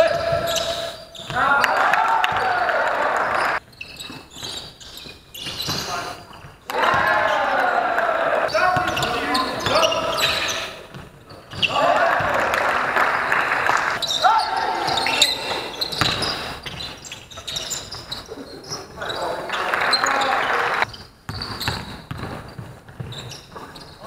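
Basketball game sounds in a large, echoing sports hall: the ball bouncing on the court amid players' movement. The sound level drops off abruptly several times, as the action cuts from one play to the next.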